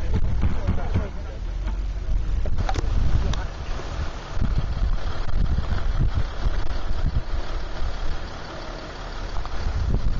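Land Rover 4x4 engine running as it works slowly over rough, grassy ground, heard under heavy wind buffeting on the microphone.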